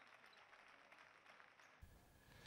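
Near silence: faint background noise, with a low hum coming in near the end.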